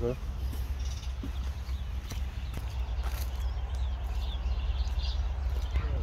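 Outdoor ambience: a steady low rumble on the microphone, with faint distant voices and a few light clicks.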